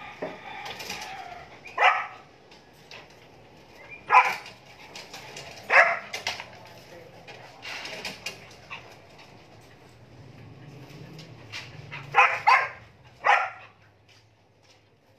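A dog barking: short single barks a few seconds apart, then three quick barks near the end.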